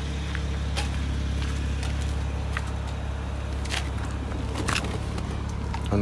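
BMW Z4 35is's twin-turbo straight-six idling steadily, with a few light clicks and knocks over it.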